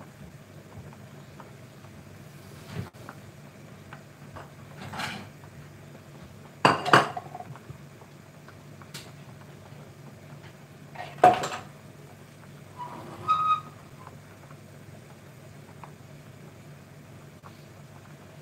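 Kitchen pots, pans and utensils knocking and clinking now and then, about six separate short clatters spread out, the loudest about a third and two-thirds of the way through, over a steady low hum.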